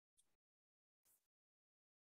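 Near silence: the dead air of a video-call pause, with two barely audible brief blips.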